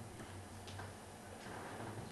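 Quiet room tone with a low steady hum and a few faint clicks.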